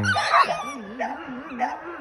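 Young dog whining in a low, wavering pitch that rises and falls several times a second.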